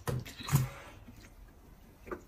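A person slurping noodles: a couple of short slurps within the first half-second or so.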